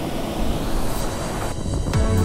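Rushing whitewater heard close up, a steady dense rush. About one and a half seconds in, the high hiss falls away and a low rumble remains.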